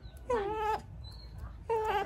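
Two short, pitched animal calls, each about half a second long: one about a third of a second in, dropping slightly in pitch, and another starting near the end.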